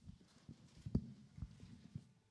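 Quiet footsteps thudding on a stage platform: about five irregular low steps, the loudest about a second in, over the faint shuffle of people settling into their seats.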